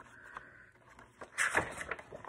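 Paper rustle of a hardcover picture book's page being turned by hand, loudest from about a second and a half in.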